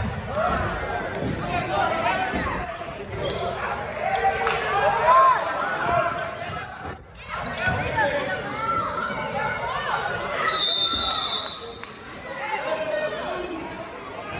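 Basketball game in a gym: the ball dribbling on the hardwood and players and spectators shouting and talking over one another, echoing in the hall. Late on, a referee's whistle is blown once for about a second.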